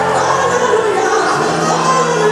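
Live gospel music: a woman singing lead into a microphone over a band of bass guitar, drums and keyboards.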